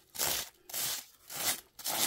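Plastic bubble wrap crinkling under a gesso-loaded sponge as it is dabbed in short, even strokes, about two a second.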